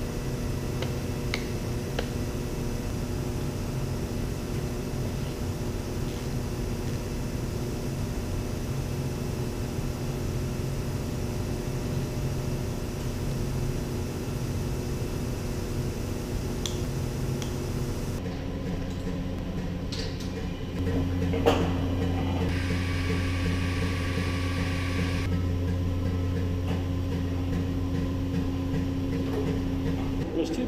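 Steady hum of industrial machinery with a few faint clicks. Near the end the sound changes, and a louder, lower steady hum from machinery around a paper-roll reelstand begins, with one sharp click as it comes in.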